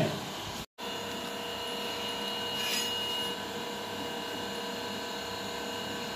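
Steady background noise with a faint electrical hum, and one brief faint scrape about three seconds in.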